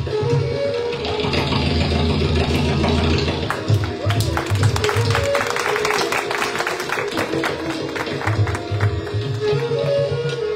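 Bansuri flute and tabla playing raga Marwa. The flute holds and bends long notes over deep bass-drum strokes, and the tabla breaks into a run of quick, crisp strokes in the middle.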